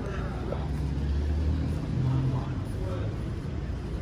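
Low rumble of a motor vehicle's engine, swelling in the first couple of seconds, with faint voices in the background.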